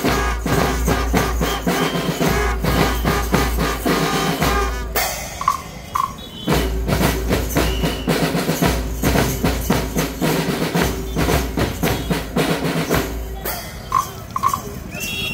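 Scout drum band of snare drums, bass drum and cymbals playing a marching beat. The drumming breaks off about five seconds in, two short high tones sound in the gap, and the band starts up again.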